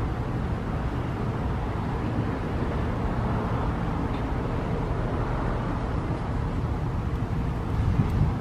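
Steady outdoor background noise: a low rumble with a light hiss above it, even in level throughout.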